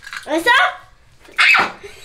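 Two short, wordless vocal outbursts from a person: a squeal that bends up and down in pitch about half a second in, then a sharper cry about a second and a half in.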